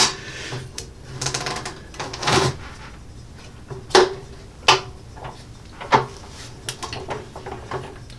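Heavy-duty steel guillotine paper cutter worked by hand as its blade cuts through a stack of notepad paper. Scraping and rustling come first, then several sharp knocks from the lever and blade mechanism in the second half.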